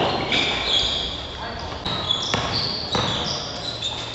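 A basketball bouncing on a hard court floor a few times, with high, short squeaks of sneakers on the court.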